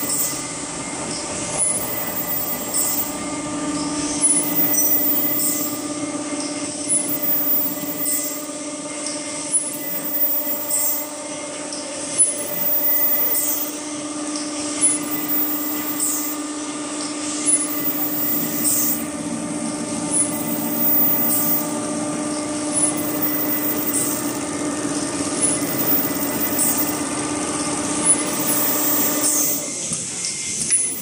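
Richpeace automatic pillow case sewing machine running: a steady whine of several tones from its drives, with short high swishes every second or two.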